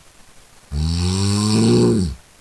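A person snoring: one long, low-pitched snore that starts under a second in and runs on past the end.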